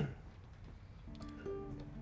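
Soft background music of plucked string notes that begins about a second in, after a brief quiet moment.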